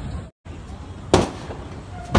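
A single sharp, loud bang about a second in, with a short echo, from a blaze among burning parked cars and battery rickshaws, over a steady background rumble. The sound drops out for a moment near the start.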